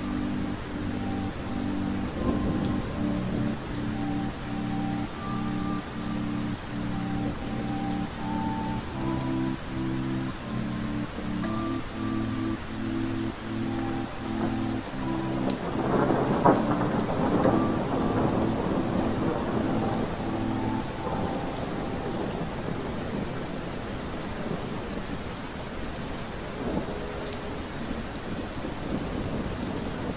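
Steady rain with a roll of thunder about halfway through, under a slow lo-fi hip hop beat of soft repeating keyboard chords. The music stops about two-thirds of the way in, leaving the rain.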